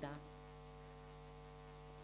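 Faint, steady electrical mains hum with a stack of even overtones, heard in a pause between words; the tail of a spoken word fades out at the very start.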